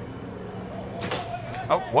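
Outboard motor running at the dock, its sound surging suddenly about a second in as the throttle is opened, which the onlooker thinks was hit by accident with someone's foot, and the boat lurches forward. A shout of 'Oh!' comes near the end.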